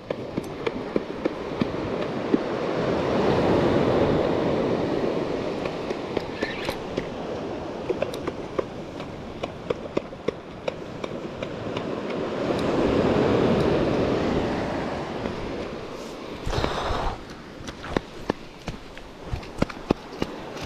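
Surf washing up the beach, two waves swelling and fading about ten seconds apart, with a shorter rush near the end. Through it come scattered short clicks and taps from the spinning reel and rod being worked as a ray is brought in on the swell.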